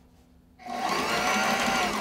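Sewing machine stitching a zipper tape onto fabric in one short burst, starting about half a second in and stopping near the end; the motor's pitch rises slightly and falls as it speeds up and slows.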